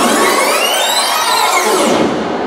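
Sweep effect in a loud electronic dance backing track: the bass and beat drop out and a cluster of pitches glides up, then falls back down over about two seconds.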